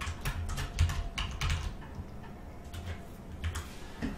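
Typing on a computer keyboard: a quick run of key clicks over the first two seconds, then a few scattered clicks.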